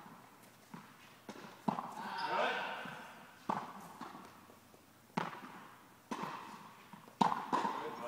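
A tennis ball being hit with rackets and bouncing on an indoor court, heard as a string of sharp knocks at uneven intervals, each ringing out in the large hall's echo. A voice calls out briefly about two seconds in.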